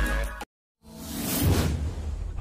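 A music track with a bass beat cuts off about half a second in. After a brief silence, a whoosh sound effect rises, peaks and fades, with a low rumble under it.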